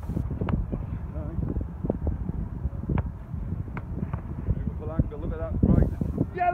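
Wind rumbling on the microphone, with a sharp thud about half a second in as the football meets the diving goalkeeper, then a few fainter knocks. Brief voices near the end.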